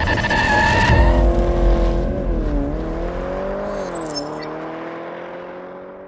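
Car tyres squealing in a burnout with the engine running hard, the squeal stopping about a second in; the engine note then carries on, dipping and rising a little in pitch, and fades away.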